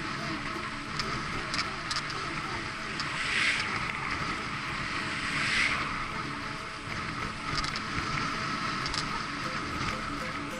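Wind rushing over the microphone of a camera moving with a bicycle, swelling twice in the middle, with background music underneath.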